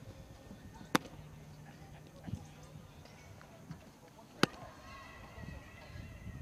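Baseball smacking into a catcher's leather mitt twice, two sharp pops about three and a half seconds apart.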